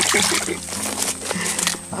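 A hooked fish splashing in shallow water at the bank as it is hauled in, over steady background music.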